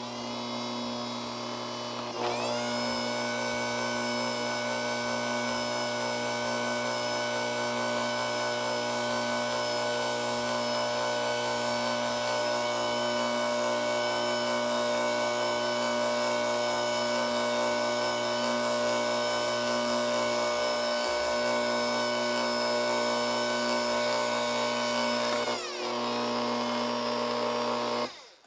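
Bosch Compact Kitchen Machine stand mixer's motor whining steadily as it beats flour into chocolate cake batter. It starts at a low speed, steps up to a higher, higher-pitched speed about two seconds in, and drops back down near the end.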